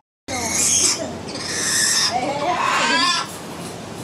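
Black-headed caique giving two harsh, loud screeches, then a wavering, warbling call. The sound starts after a brief dropout at the very start.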